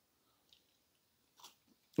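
Faint chewing of a mouthful of doner kebab meat, with one short click about one and a half seconds in.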